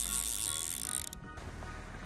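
Click-and-pawl fly reel buzzing as a hooked steelhead pulls line off it, cutting off about a second in.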